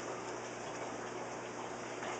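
Aquarium water circulating: a steady, even hiss with no distinct sounds standing out.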